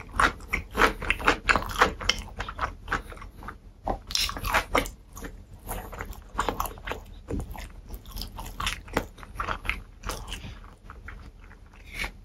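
Close-miked chewing of a pickle, many short crunches in quick succession, coming thick at first and thinning out in the second half.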